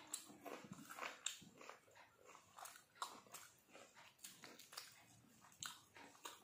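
Faint, close eating sounds: irregular soft clicks and smacks, a few a second, from chewing a mouthful of rice and from fingers mixing rice on a metal thali plate.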